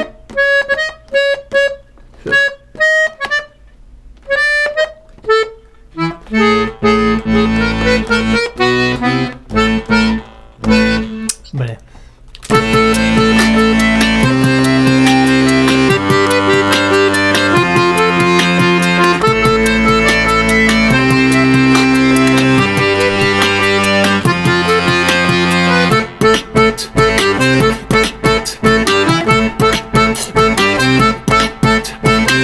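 Bayan (Russian chromatic button accordion) played. It opens with halting single notes and pauses, like a beginner picking out a tune, moves into quicker runs, then from about the middle swells into loud full chords that change every second or two, and ends in fast short notes.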